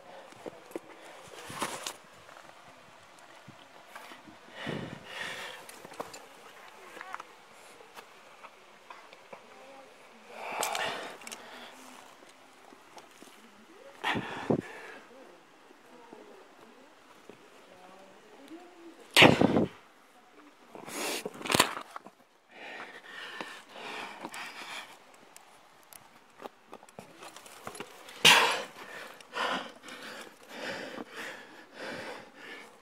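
A climber's effortful breathing and short vocal grunts on hard moves, broken by scattered sharp knocks and scuffs of contact close to the camera. The loudest knock comes about two-thirds of the way through.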